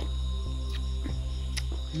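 Background music: a steady, sustained drone-like bed, with a few faint clicks.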